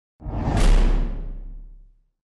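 Logo-reveal sound effect: a whoosh over a deep, low boom. It swells in quickly, peaks just under a second in, then fades away over about a second.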